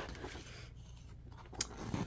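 Faint rustle of printed paper instruction sheets being handled and turned, with a single click about one and a half seconds in, over a low steady hum.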